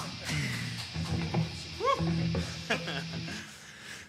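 Electric guitars and bass sounding loosely between songs: scattered picked notes, a held low note, and a short tone that swoops up and back down about two seconds in, fading out near the end.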